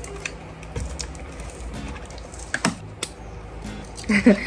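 Fingers picking at and opening a small cardboard box: scattered cardboard scratches and light clicks, with a couple of sharper clicks in the last second and a half.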